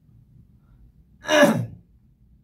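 One short, breathy laugh from a man, let out like a sigh about halfway through, falling in pitch as it fades.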